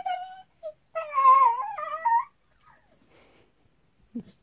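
Staffordshire bull terrier whining in high, wavering cries: a short whine at the start, then a longer one lasting about a second and a half. The dog is worked up by dogs on the television.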